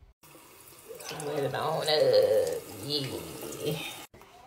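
Water running from a bathroom faucet into a sink and over a hand.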